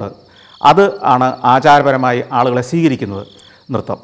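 A man talking in Malayalam, with crickets chirring steadily and faintly behind him.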